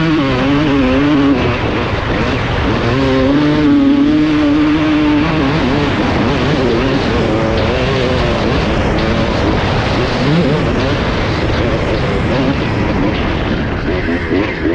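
Honda CR250R two-stroke single-cylinder motocross engine under riding load, its revs rising and falling with the throttle and held steady for a couple of seconds about three seconds in.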